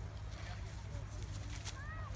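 Low wind rumble on the microphone, with a brief high-pitched young child's voice near the end.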